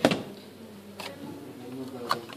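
A plastic petri dish knocked and handled on a bench, a sharp clack at the start and a lighter click about a second later, over a faint wavering buzz.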